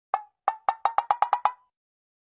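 A cartoon wood-block sound effect: about nine hollow, pitched knocks that speed up like a ball bouncing to rest, stopping about three-quarters of the way in.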